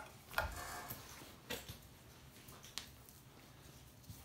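Faint handling noises from working the hide off a hanging red fox carcass by hand: a few soft clicks and rubs, about half a second, a second and a half and nearly three seconds in, over quiet room tone.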